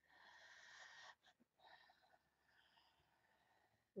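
Faint breathing of a person: one breath of about a second, then after a short pause a longer, fainter breath.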